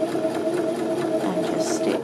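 Janome 725s Sewist sewing machine running with an even, steady hum, stitching the third and final pass of a narrow rolled hem.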